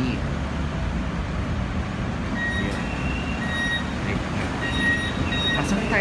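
Street traffic, vehicle engines giving a steady low rumble, with a few short high electronic beeps coming and going in the second half.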